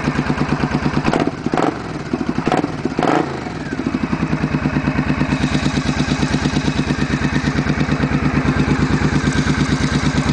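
A 2003 Triumph Bonneville America's parallel-twin engine idling steadily with an even pulse. A few sharp knocks come in the first few seconds, while the sound dips slightly.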